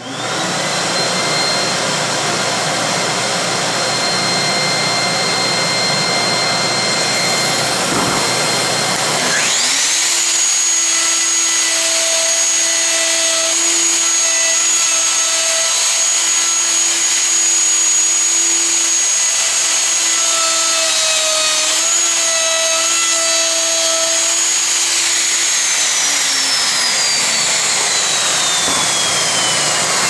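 Festool dust extractor switched on and running steadily. About nine seconds in, a Festool OF 2000 plunge router spins up to a high whine and cuts with a straight bit through a routing template, its pitch dipping briefly a couple of times under load. Near 25 seconds the router is switched off and its whine slowly falls away while the extractor keeps running.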